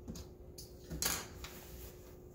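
A cotton chef jacket rustling as it is handled and turned over by hand, with a short, louder swish of fabric about a second in.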